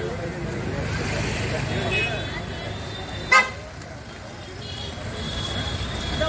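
Street traffic, engines running under background voices, with one short vehicle horn toot a little over three seconds in, the loudest sound.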